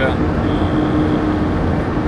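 Steady engine and road rumble inside the cabin of a moving vehicle.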